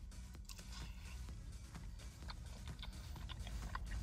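A person quietly chewing a mouthful of sauce-glazed boneless chicken wing, with faint, scattered wet mouth clicks and smacks.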